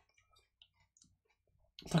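Near silence broken by faint, scattered small clicks from a man eating salad, then his voice begins near the end.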